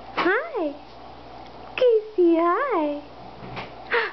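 Baby cooing: a short coo that rises and falls, then, about two seconds in, a longer drawn-out coo that swoops up and back down in pitch.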